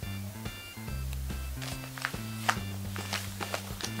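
Background music with a bass line of held low notes that change every second or so, and a few light taps scattered through it, the sharpest about two and a half seconds in.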